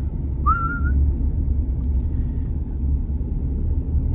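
Steady low rumble of a car's engine and tyres heard inside the cabin while driving, with one short rising whistle about half a second in.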